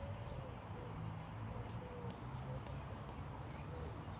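Soft, irregular taps of a football being dribbled on artificial turf, faint over a low steady hum.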